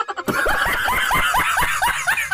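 A man laughing hard in a rapid, high-pitched run of laughs that starts a moment in, about six a second.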